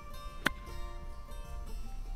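A golf iron striking the ball once, a single sharp click about half a second in, over background acoustic guitar music.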